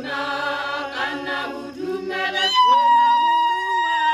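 A women's choir singing a cappella. About two and a half seconds in, one high voice holds a single long, steady note over fainter lower voices.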